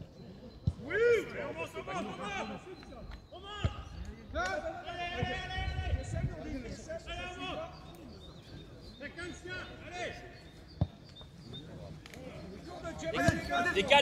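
Players shouting to each other across an outdoor football pitch, their calls unclear, with a few dull thuds of the football being kicked.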